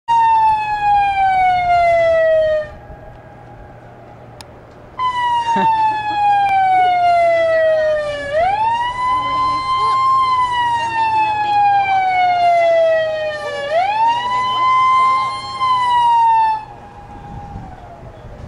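Hydroelectric dam's warning siren wailing: a slow falling tone that cuts off, then after a short gap sounds again, sweeping quickly back up in pitch twice and sliding down each time before it stops near the end. It is the alarm that warns that the dam's gates are opening and the river below will rise.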